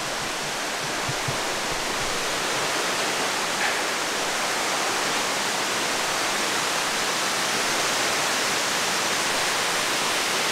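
Steady rush of falling water from a waterfall or stream, slowly growing a little louder, with a couple of faint knocks about a second in.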